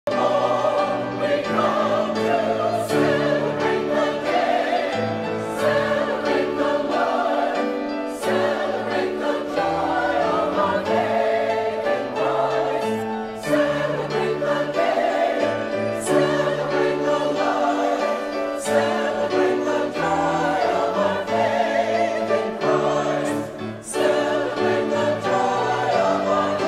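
Church choir singing in parts with instrumental accompaniment: full sustained chords and a moving bass line that change every second or two.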